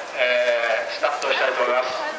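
Speech: a man's announcing voice over a public-address system, talking in two phrases with a short break about a second in.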